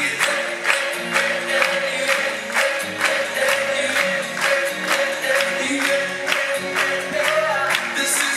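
Upbeat Europop dance track played loud through a concert hall's PA, with a steady beat and a repeating bass line, and a man singing live into a handheld microphone over it.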